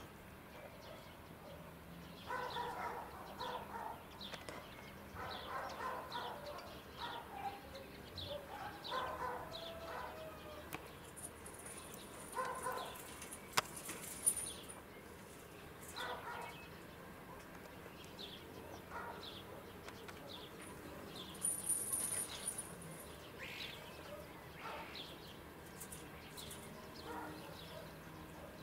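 Outdoor yard ambience: small birds chirping over and over, with a dog barking in the distance in short runs every few seconds.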